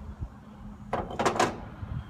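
A small steel part, the worm drive just pulled from a rod rotator, set down on a steel workbench: a short scraping clatter of metal on metal about a second in, over a faint steady hum.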